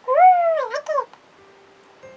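A single meow, about a second long, that rises, holds and then falls in pitch at the end.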